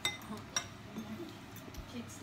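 Metal cutlery clinking twice against a ceramic noodle bowl, the second clink about half a second after the first.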